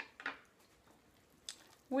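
A metal utensil stirring waffle batter in a glass mixing bowl: a short click against the bowl at the start and another about a second and a half in, with soft quiet mixing between.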